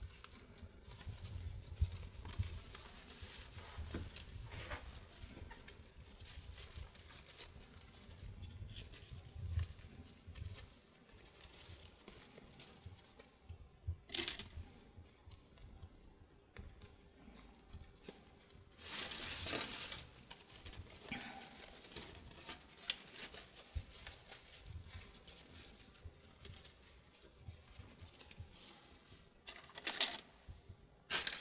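Stiff starched lace rustling and crinkling as it is folded into pleats and pinned by hand, with faint scattered clicks and one louder rustle about two-thirds of the way through.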